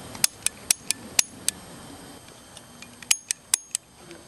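A gun's trigger clicking on an empty chamber as it is dry-fired: six sharp clicks at about four a second, then a pause and four quicker clicks near the end. The clicks show that the gun is out of ammunition.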